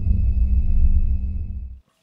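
Deep, low rumbling transition sound effect with a faint high steady tone over it, fading and cutting off abruptly shortly before the end.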